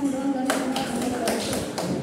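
A small group clapping hands in scattered, uneven claps that start about half a second in, mixed with laughter and voices.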